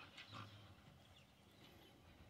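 Near silence, with a few faint clicks in the first half-second: a dingo's paws shifting on the hard plastic shell it is standing on.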